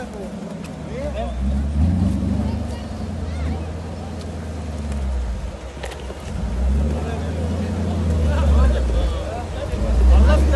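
Jeep Wrangler YJ's engine running at low revs as it crawls down a rocky slope, revving up about two seconds in and again for a longer stretch from about seven seconds, with spectators' voices over it.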